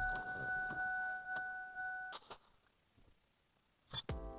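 A car's electronic warning tone sounds steady at one pitch with its octave and stops about two seconds in. A thump follows right after, then near silence, and a brief sharp noise comes near the end.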